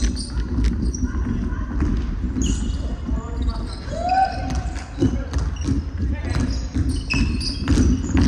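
A basketball bouncing on a hardwood court, with repeated sharp knocks, and sneakers squeaking in short high chirps. Players' voices call out, and everything echoes in a large arena hall.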